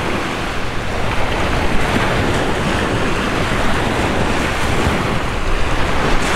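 Small sea waves washing onto a sandy beach, mixed with wind buffeting the microphone: a steady, loud rushing noise with a low rumble.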